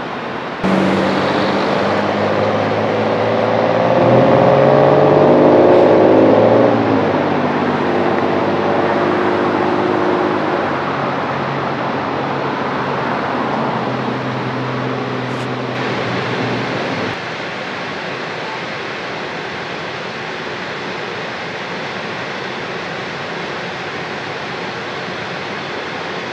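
A motor vehicle's engine running nearby, its pitch climbing and then dropping as it accelerates through a gear change, then holding steady, over a constant roar of wind or traffic noise. The engine sound starts suddenly about a second in and cuts off suddenly about 17 seconds in.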